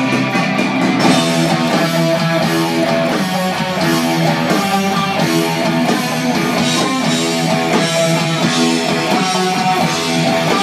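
Electric guitar playing a passage of sustained notes and chords.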